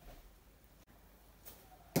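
A thrown bo-shuriken striking a wooden target: one sharp, loud thud near the end, with a faint tick about half a second before it, over low room tone.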